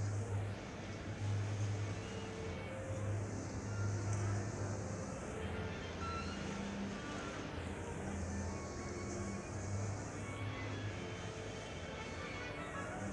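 Hall ambience of an audience waiting in a concert shed before a performance, heard on an old radio broadcast recording as a steady noisy hiss with a low hum that comes and goes.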